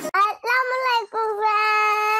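A young child's voice singing in drawn-out notes: a short note, then two longer held ones, the last held steady for over a second.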